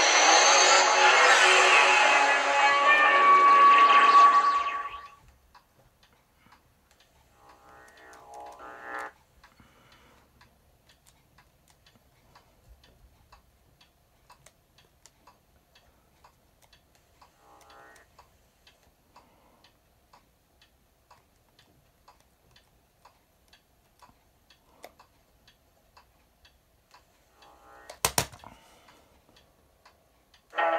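DVD menu music playing through a TV for about five seconds, then stopping. After that it is near quiet, with faint ticking, two brief faint sounds, and a sharp double click near the end.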